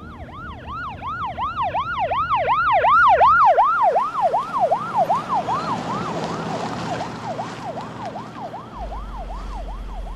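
Ambulance siren in a fast yelp, about three rises and falls a second. It grows louder to a peak about three seconds in, then drops a little in pitch and fades as it passes.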